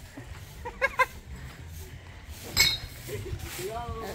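Brief bursts of people's voices outdoors: short calls and laughter, the loudest one a bit past halfway, over a low background rumble.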